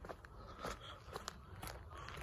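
Footsteps of Nike Air Monarch sneakers on gritty asphalt: a string of short clicks and scuffs from the soles, with the air cushions squeaking and grit crunching underfoot.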